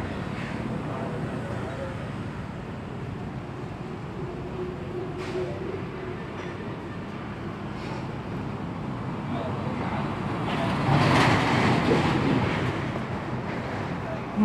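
Steady road traffic noise, with one vehicle passing close by and swelling loudest about eleven seconds in before fading.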